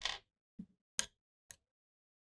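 Small steel screws and tools clicking against a wooden tabletop as they are set down during disassembly: four short clicks about half a second apart, the first a little longer.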